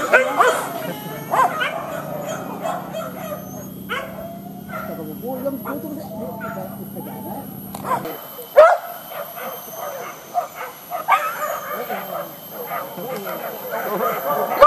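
Several boar-hunting dogs barking, many calls overlapping one another, with a single sharp loud knock about eight and a half seconds in.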